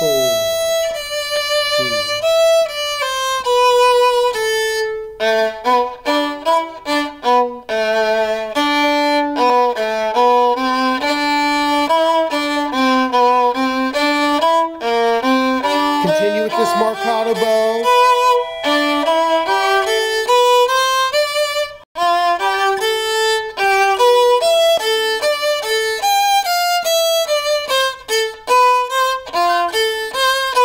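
Solo violin playing the second violin part of a fuguing tune: it opens on a held note, then plays a long run of shorter bowed notes that step up and down, shifting between positions, with a brief break a little over 20 seconds in.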